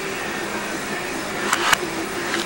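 A steady mechanical whir with a low hum, with two sharp clicks about one and a half seconds in.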